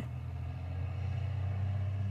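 A steady low rumble like a motor vehicle's engine, swelling slightly and then dying away at the end.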